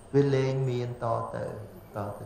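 A man's voice speaking in a drawn-out, chant-like way: the first syllable is held on one steady pitch for nearly a second, then shorter syllables follow.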